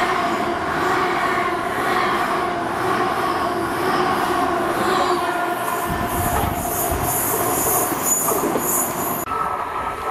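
GWR Hitachi Intercity Express trains. First there is a steady, multi-toned hum from the train beside the platform. From about six seconds in, another train approaches, bringing a low rumble, a rising hiss of rail noise and a thin, high wheel squeal. The sound changes abruptly shortly before the end.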